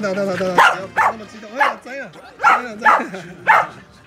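Corgis barking and yipping excitedly in greeting, in a run of about five or six short, sharp, high barks.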